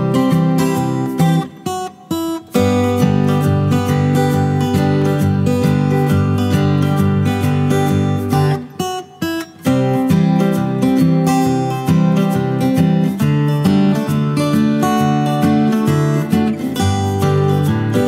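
Background music of strummed acoustic guitar, briefly dropping out about two seconds in and again about nine seconds in.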